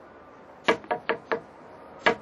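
Four quick, sharp knocks on concrete rubble, each with a brief ring, starting a little after half a second in. This is tapping on the slabs used in an acoustic search for a trapped victim.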